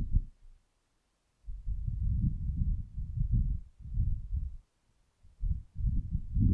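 Muffled low thumps and rumbles in irregular bursts, a dull brief one at the start, then a long run of them from about a second and a half in, and more near the end.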